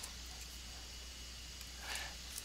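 Quiet room tone: a steady faint hiss and low hum from the recording, with a soft breath near the end.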